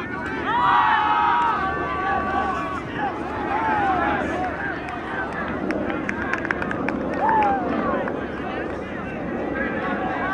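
Players' voices outdoors: overlapping chatter and shouting, with several drawn-out calls held together near the start.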